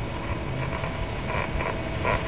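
Steady hiss and line noise on a recorded telephone call, with a few faint short sounds in it.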